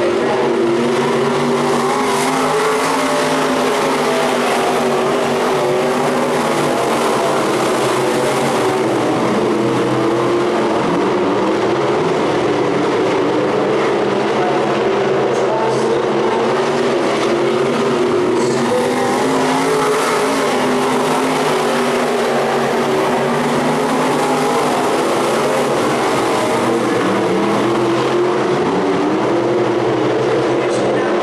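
Several dirt-track sportmod race cars' engines running together on the oval, their pitch rising and falling as they accelerate out of and lift into the turns.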